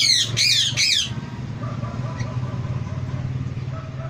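Indian ringneck parakeet giving three loud, harsh squawks in quick succession in the first second, each sweeping up and then down in pitch.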